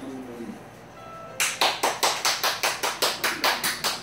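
A fast, even percussive beat of sharp hits, about five a second, starting about a second and a half in, just after a brief steady tone.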